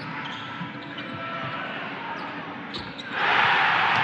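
Basketball being dribbled on a hardwood court, with sneakers squeaking under a murmuring arena crowd; about three seconds in the crowd suddenly erupts into a loud, sustained roar.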